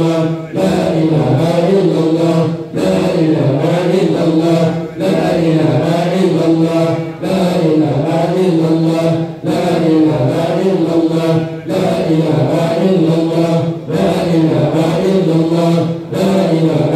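Men's voices chanting Islamic prayer verses into microphones over a PA system, in a steady melodic line of phrases about two seconds long with short breaths between them.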